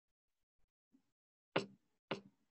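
Near silence, then a single sharp finger snap about one and a half seconds in, the first beat of a children's counting song's intro.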